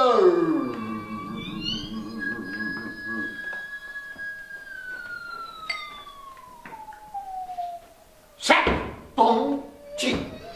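Free-improvised live music: a falling vocal cry at the start, then a thin high tone that holds and slowly slides down in pitch over a fainter steady tone. Loud, sudden sounds break in near the end.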